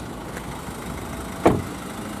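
A single solid thud about one and a half seconds in as the Vauxhall Astra GTC's door is shut, over a steady low background rumble.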